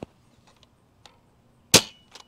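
Adventure Force Nexus Pro spring-powered dart blaster firing a single half-length dart: one sharp crack of the spring release, about three-quarters of the way through.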